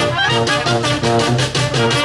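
Live brass band playing: trumpets, trombones, saxophones and tuba over a steady bass-drum and snare beat.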